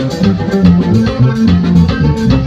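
Live norteño music played loud: a button accordion over electric guitar, a moving bass line and drum kit.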